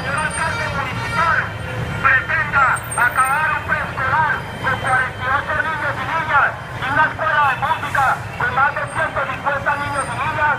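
Voices too unclear to make out words, over a steady low rumble of street traffic.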